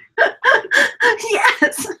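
A woman laughing hard in a quick run of short, gasping bursts, about four a second.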